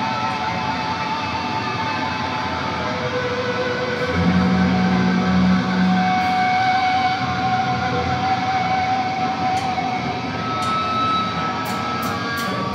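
Electric guitars through Marshall amplifiers ringing out long held notes and sustained tones, with a low held bass note from about 4 to 6 seconds in and no drums playing; the full band with drums comes in right at the end.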